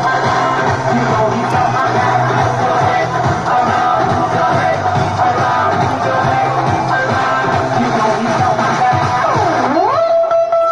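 Recorded music played loud through a PA loudspeaker for a stage dance. Near the end a swooping sound falls and then rises in pitch.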